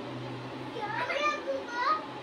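Small children's voices: a few short rising calls or babbles about a second in and again near the end, over a steady low hum.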